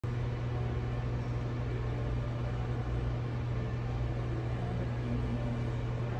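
A steady low mechanical hum over a constant even hiss, unchanging throughout.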